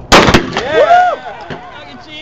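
A single loud shotgun shot about a tenth of a second in. It is followed by a man's voice calling out, rising then falling in pitch.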